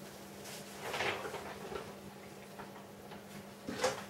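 Handling noise of an acoustic guitar being lifted and settled onto the lap: soft knocks and rustles, with a sharper knock just before the end, over a faint steady hum.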